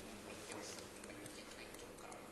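Faint hiss of a quiet room with a few soft ticks.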